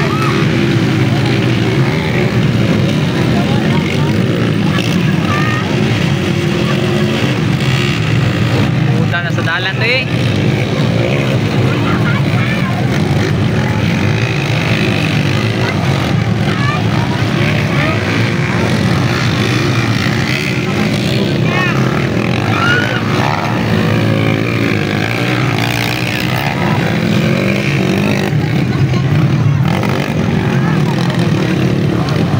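Underbone motorcycles racing on a dirt track, their small engines revving up and down as they pass, over a steady din of voices.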